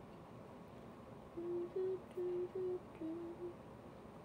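A young woman humming a short tune with her mouth closed: a quick run of about six short notes that step up and down, starting a little over a second in and stopping around halfway through the last second.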